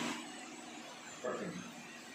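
Steady background hiss of room noise picked up by the camera microphone, with a brief murmur of a man's voice just over a second in.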